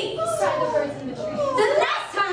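Several young voices giving high, gliding shrieks and cries, overlapping, as performers imitate animal and bird calls.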